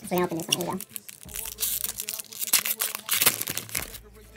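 Foil wrapper of a Pokémon trading-card booster pack being torn open and crinkled: a dense run of crackling and ripping from about a second in until just before the end.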